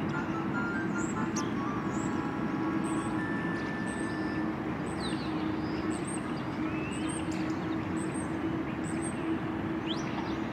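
Street ambience: a steady low hum of traffic, with short high bird chirps repeating about once a second.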